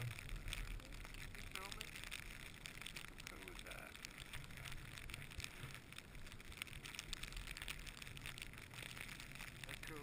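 Faint steady wind noise in falling, blowing snow, with light rustling and clicks against the camera and a low rumble, broken a few times by faint, brief voices.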